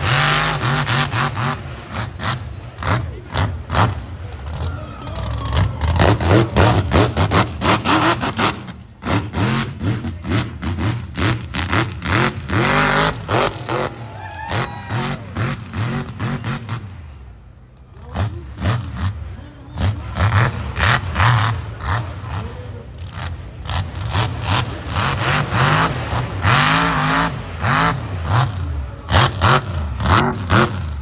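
Lifted mud truck's engine revving hard again and again, its pitch climbing and dropping in quick surges as it spins its big tires through the dirt.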